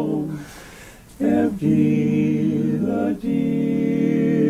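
A male barbershop quartet singing a cappella in close four-part harmony. A held chord dies away at the start, then after a short pause new sustained chords begin about a second in, broken twice by brief breaths.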